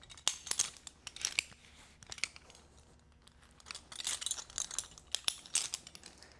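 Metal rope-access hardware clicking and rattling, with rope scraping through a device, as a climber works his rope system. It comes in two spells of small clicks and scrapes, with a quieter gap in the middle.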